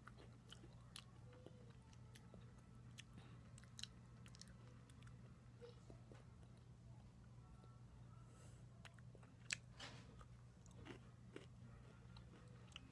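Faint chewing of an Oreo sandwich cookie: scattered soft crunches and mouth clicks over a steady low hum, with a couple of slightly louder clicks late on.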